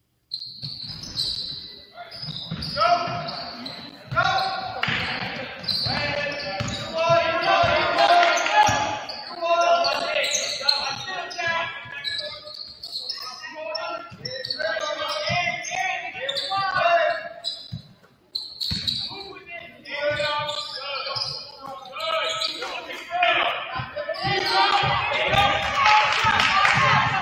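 Basketball bouncing on a hardwood gym floor during live play, with players and spectators shouting and chattering in a large gym hall.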